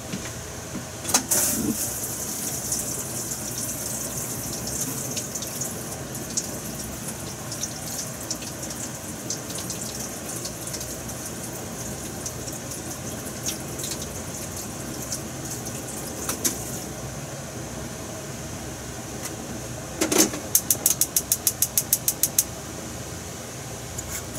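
Gas stove burner hissing steadily under a frying pan. The hiss fades about two-thirds of the way through, and near the end comes a quick run of about ten clicks from the stove's igniter.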